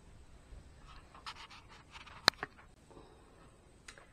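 Faint rustling handling noises, with one sharp click just past halfway, a softer click right after it, and another click near the end.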